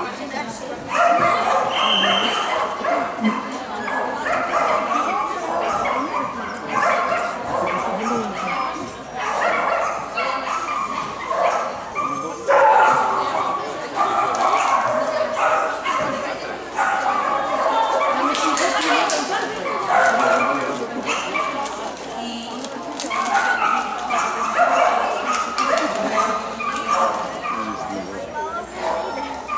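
Dogs barking and yipping again and again, mixed with people talking.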